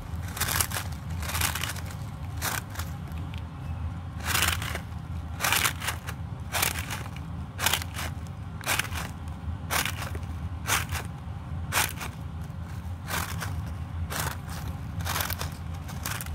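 A balloon stress ball squeezed and kneaded by hand, giving a short scratchy crunch with each squeeze, roughly once a second.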